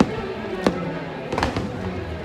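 Fireworks bursting overhead in several sharp bangs, about four in two seconds, over the show's music.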